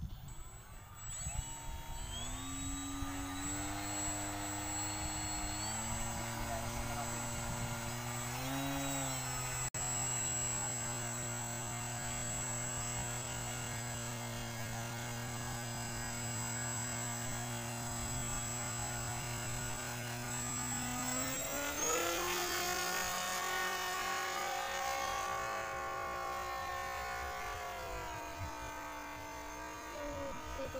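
Homemade RC motor-glider's motor and propeller spinning up, then running steadily at part throttle with a high whine. About 22 seconds in the pitch rises sharply as it goes to full throttle for the hand launch, then wavers and drops as the plane climbs away.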